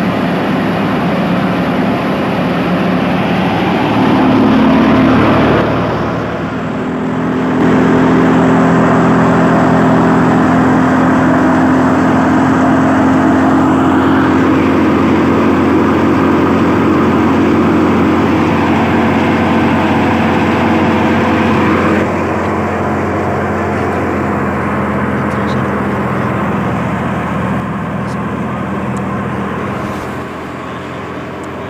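Canola thresher running steadily: its belt-driven threshing drum and pulleys make a loud, continuous mechanical hum with steady tones. The sound dips briefly about six seconds in and turns a little duller near the last third.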